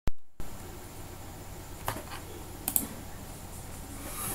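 Two sharp clicks from computer handling, about two and about two and three-quarter seconds in, over steady low room noise with a faint hum. A loud click at the very start marks the screen recording beginning.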